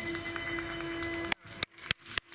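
A yobidashi's long, drawn-out chanted call held on one steady note. It cuts off abruptly about a second and a half in, and a regular run of sharp clicks follows at about four a second.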